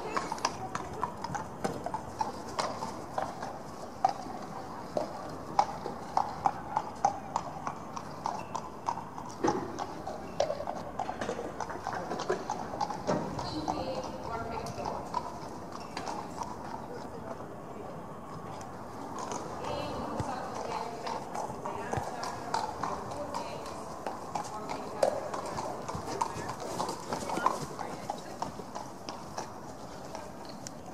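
Hoofbeats of a horse trotting on an indoor arena's sand footing: a regular run of soft footfalls.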